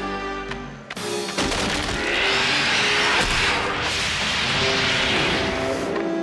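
Orchestral film score. From about a second and a half in, a loud, sustained crashing rumble of tumbling rocks comes in over the music: a cartoon rockslide effect.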